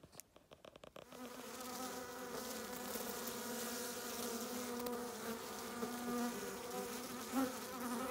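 Honeybees buzzing at a beehive entrance: a steady, even hum that starts about a second in.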